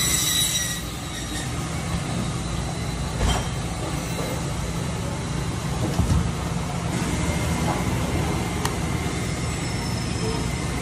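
Steady low machine hum under a constant background noise, with a few short knocks of handling on the cutting board about three and six seconds in.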